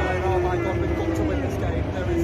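A man talking close to the microphone over a steady low rumble.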